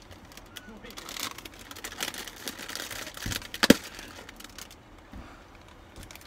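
A Doritos chip bag crinkling as it is handled and pulled open, with one sharp snap a little past halfway through.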